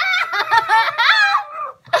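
Children laughing loudly in high-pitched giggles that rise and fall quickly, breaking off briefly near the end.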